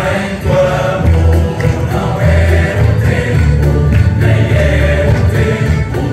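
A Portuguese university tuna performing: many voices singing together in chorus over instrumental accompaniment with a strong, steady bass.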